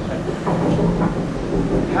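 Black powder rolling mill running: edge-runner wheels weighing eight to ten tons roll around a flat iron bed through a charge of imitation powder. They make a steady, low rumble.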